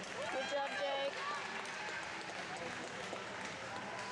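Murmur of many voices in a large indoor arena, with a voice rising and falling in the first second.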